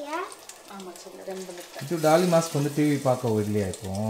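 Indistinct voices over a steady sizzle of oil frying in a pan. The voices start about a second in and are loudest from about halfway.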